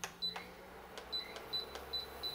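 Induction cooktop being switched on: a click, then several short high-pitched beeps from its controls over a faint low hum.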